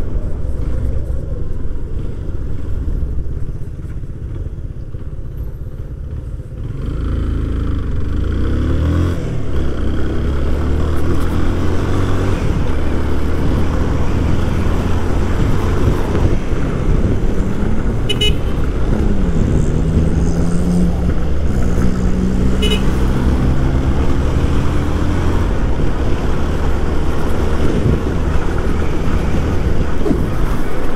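Motorcycle engine heard from the rider's seat, running quietly for the first few seconds, then pulling harder from about seven seconds in, its pitch rising and falling as it accelerates and changes gear, over traffic noise. Two brief high beeps sound past the middle.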